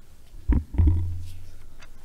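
Thumps on the ambo picked up by its gooseneck microphone: two dull knocks about a third of a second apart, the second trailing into a low hum that fades over about a second.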